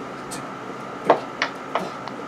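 Three short thuds about a third of a second apart, starting about a second in: feet landing on the floor during jumping jacks.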